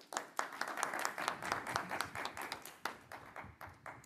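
Audience applauding at the close of a talk: a dense run of claps that starts at once and tails off near the end.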